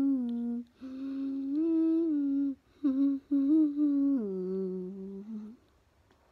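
A boy humming a slow tune in long held notes that step up and down in pitch, with two short breaks, stopping shortly before the end.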